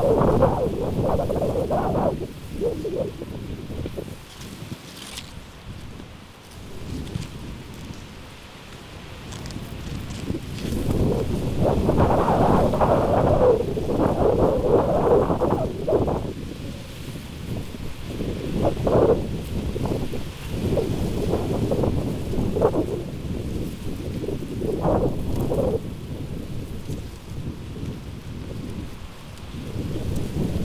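Strong wind gusting and buffeting the microphone, a deep rushing noise that surges and fades. A loud gust at the start dies down to a lull for several seconds, then a long surge builds about eleven seconds in, followed by shorter gusts.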